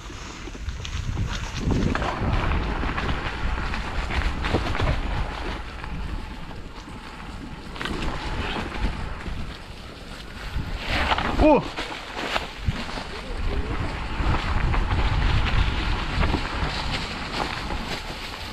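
Mountain bike riding down a leaf-covered dirt trail: wind rumble on the microphone, tyres rolling over dry leaves, and clatters and knocks from the bumpy ride. One short shout comes about eleven seconds in.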